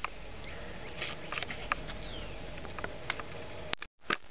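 Steady faint background noise with a few light, scattered clicks and taps, ending in a sudden brief dropout to silence.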